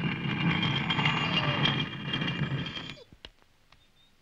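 A heavy sliding wall panel of a secret passage grinding shut as its handle is turned round: a rumbling scrape with a thin high whine over it. It stops abruptly about three seconds in.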